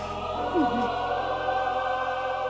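Trailer music: a choir holding one long sustained chord.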